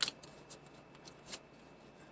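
Tarot cards being shuffled and handled, with a few faint card clicks, the clearest near the start and another a little after a second in.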